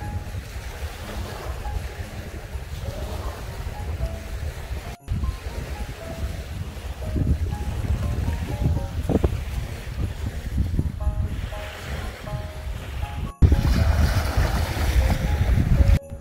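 Small waves washing onto a sandy beach, with gusting wind buffeting the microphone, under quiet background music. Near the end the wind noise jumps and grows louder.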